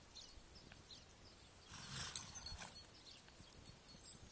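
Thoroughbred mare and foal walking on the soft dirt of a round pen, faint hoof steps, with one louder noisy stretch lasting about a second about two seconds in.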